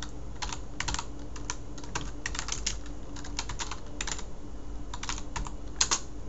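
Typing on a computer keyboard: a quick, irregular run of key clicks as two words are entered, with a louder pair of clicks near the end.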